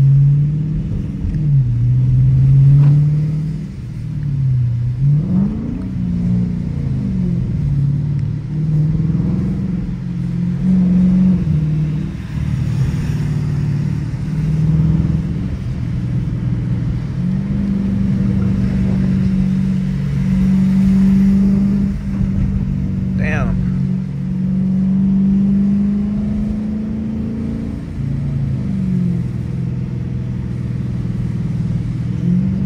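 Dodge Challenger R/T's HEMI V8, heard from inside the cabin, pulling away from a stop. Its pitch rises and drops back at each gear change, then it settles into a steady cruise before easing off near the end. A short rising squeak comes about two-thirds of the way through.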